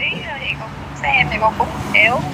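A woman's voice speaking in short phrases over a video call, heard through a phone's small speaker, with a steady low hum underneath.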